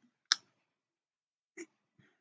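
Two short clicks in a pause, a sharper one about a third of a second in and a fainter one near the end.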